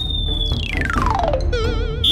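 Comic cartoon sound effect: a high whistling tone that drops in a long descending glide, then turns into a short wobbling warble, over background music.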